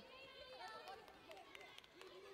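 Faint, overlapping voices of spectators calling out in a large arena hall, low in level.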